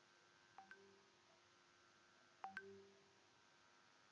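Near silence, broken twice by a faint pair of quick clicks, each pair followed by a short fading tone; the second pair is louder.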